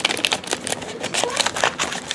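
A paper card envelope being handled and opened over cellophane gift wrap: irregular rustling with quick crackling clicks.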